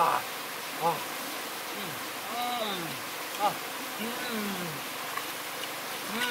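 A man humming short wordless 'mm' sounds, about one a second, most of them falling in pitch and a few rising, over the steady rush of a river.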